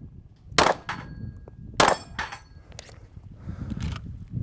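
Two shots from a 9mm Glock 17 Gen 5 pistol, about a second and a quarter apart, each followed by a fainter second crack. A thin metallic ringing from struck steel targets hangs on after the first shot.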